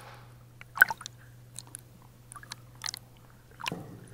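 Small waves lapping and splashing against a camera tied to a swim float at the water surface: a scatter of short wet clicks and ticks, the loudest about a second in, over a faint steady low hum.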